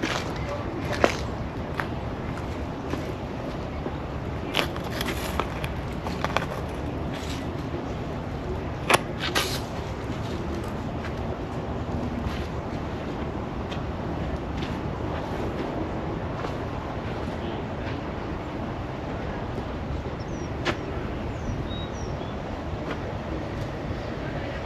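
Steady outdoor background noise with scattered sharp clicks, the loudest about a second in and about nine seconds in, and a few faint high chirps near the end.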